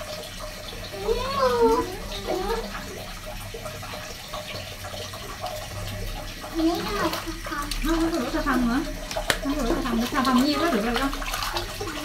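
Water sloshing and dripping in a plastic baby bathtub as a toddler is washed with a sponge, with a person's voice coming and going over it, about a second in and again through the second half.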